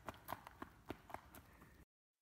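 Faint, irregular footsteps crunching on a dirt trail, a few steps a second, stopping abruptly near the end.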